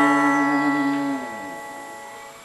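A sustained guitar note rings steadily, then slides down in pitch a little over a second in and fades away.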